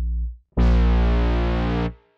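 Synth bass presets in FL Studio's Harmor plugin auditioned one note at a time: one bass note fades out about half a second in, then a brighter, buzzier bass note sounds for over a second and cuts off.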